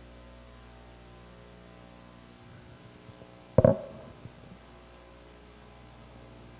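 Steady electrical mains hum. About three and a half seconds in there is a single sharp knock that rings out briefly, followed a moment later by a small click.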